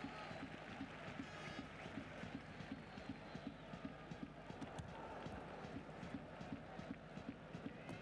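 Football stadium crowd ambience at a low level: a steady hubbub of many voices with many quick, irregular taps running through it.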